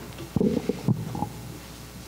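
A short burst of muffled, low rumbling noise lasting about a second, starting a third of a second in.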